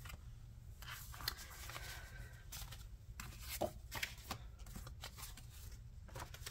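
Paper index cards being slid, gathered and laid down on a tabletop: a few soft, irregular rustles and taps.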